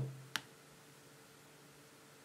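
A single sharp computer mouse click, then near silence: faint room tone with a light steady hum.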